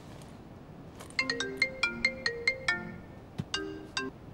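Mobile phone ringtone: a quick tune of about a dozen short chiming notes in under two seconds, starting about a second in and beginning again near the end.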